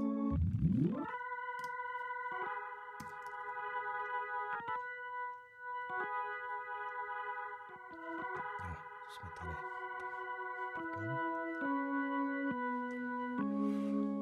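Keyboard part played back from the recording session: sustained electric-piano chords changing every second or two, with a low rising glide about half a second in. It runs through LUNA's Studer A800 tape-machine emulation.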